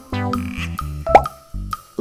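Background music with plucked, bass-heavy notes, and about a second in a single loud, quick rising plop.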